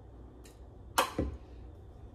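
A small plastic seasoning container handled over a plastic-lidded mixing bowl: a sharp click about a second in, followed at once by a short dull knock, with a fainter click before it.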